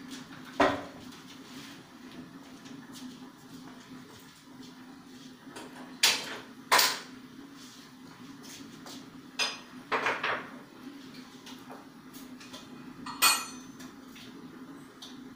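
Steel kitchen pots, lids and utensils clinking and clattering as they are handled at a gas stove: about seven separate knocks, the loudest about six seconds in and near the end. A steady low hum runs underneath.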